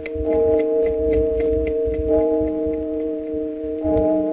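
Radio-drama music bridge: a clock ticking about three to four times a second, growing fainter, under held sustained chords that change about halfway through and again near the end. It marks the hours passing between scenes.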